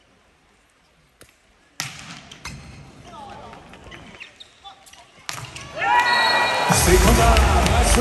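A quiet arena hush, then a volleyball struck sharply about two seconds in, followed by a rally with scattered crowd voices and a second hard hit of the ball about five seconds in. Near the end the crowd noise swells loudly and arena music joins in as the point is won.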